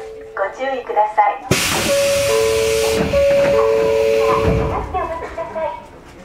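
A sudden loud hiss of released compressed air from a train standing at a station, starting about a second and a half in and easing off over the next few seconds. Two steady electronic tones alternate over it, with brief voice fragments at the start and end.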